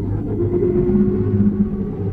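Car engine running at a steady, fairly low rev, a held engine sound effect with a deep even hum.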